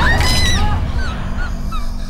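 Several shrill, overlapping screams or shrieks sweeping up and down over a deep rumble and a low steady drone, thinning out after about a second.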